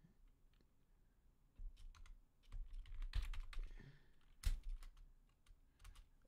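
Faint typing on a computer keyboard: scattered key clicks after a quiet first second or so, then one sharper keystroke about four and a half seconds in.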